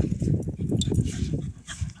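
A small shaggy terrier-type dog breathing hard and panting close to the microphone, the sound dying away near the end.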